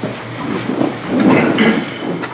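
People sitting back down: chairs moving and creaking, with rustling and shuffling.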